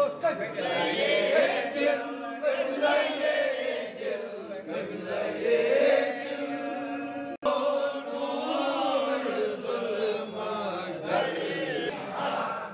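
A group of men chanting a devotional recitation together, many voices overlapping in a continuous, swelling and falling chant. The sound cuts out for an instant about seven seconds in.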